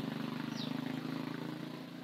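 A steady, fast-pulsing engine hum, like a motor idling, with a brief faint high chirp about half a second in.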